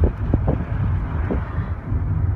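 Steady low rumble of car cabin noise from a moving car, with a few soft knocks.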